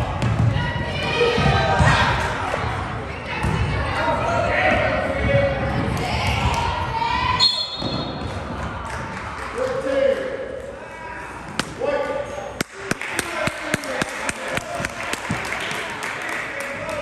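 Basketball being dribbled on a hardwood gym floor amid players' and spectators' voices. In the last few seconds the bounces come in a quick, even run.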